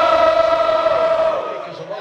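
Crowd of football fans singing a chant in unison, holding one long note that fades toward the end.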